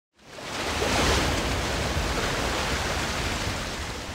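A wave rushing through an artificial surf pool: a steady rush of water that swells over the first second and then eases off slowly.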